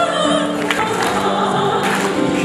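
Choral music: several voices singing long held notes together.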